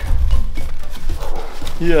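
Low rumble on the camera's microphone, heaviest in the first half-second, as the camera is carried outdoors; a man's voice comes in near the end.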